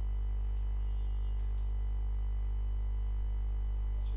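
Steady low electrical mains hum, with a faint steady high-pitched whine above it.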